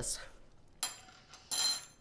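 A woman's voice: the end of a word, then two short breathy vocal sounds, one near the middle and a louder one in the second half.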